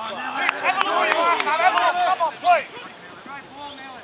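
Men's voices shouting and calling out across a football pitch, words unclear, dying away after about two and a half seconds to a quieter open-air background with faint far-off voices.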